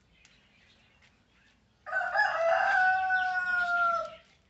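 A rooster crowing once: a single long call that starts about two seconds in and lasts about two seconds, its held note sagging slightly at the end.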